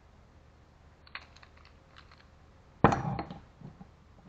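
Rotary tube cutter being worked around a copper pipe: a few light metallic clicks, then one sharp, loud metal clank a little under three seconds in, followed by a few softer knocks.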